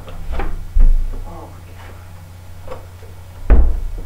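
A wooden interior door being opened and then shut with a loud thud about three and a half seconds in, with a softer thump about a second in.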